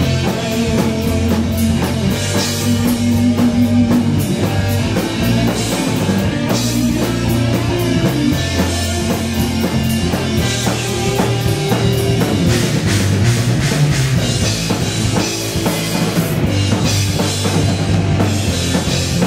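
Heavy metal band playing live: electric guitars through amplifiers, bass and a drum kit with steady cymbal hits, loud throughout.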